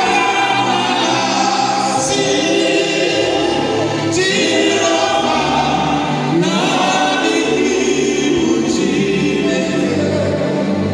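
A choir singing gospel music in long held phrases, with a new phrase starting about two, four and six and a half seconds in.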